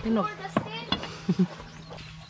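A machete cutting through a whole jackfruit, slicing off its top end, with two sharp knocks of the blade about half a second and about a second in. Voices are heard over it.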